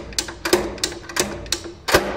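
Spring-charging mechanism of a Schneider Electric Masterpact air circuit breaker ratcheting as its charging handle is pumped by hand: a run of clicks about three a second. Near the end comes the loudest click, as the closing spring reaches full charge.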